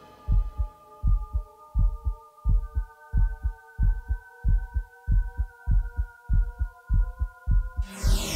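Heartbeat sound effect in the dance music track: paired low thumps repeating a little faster than once a second, under a sustained synth chord that builds up one note at a time. It all cuts off suddenly just before the end.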